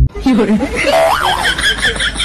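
A voice in a room, with a caique parrot's rapid high chirps running through the second half.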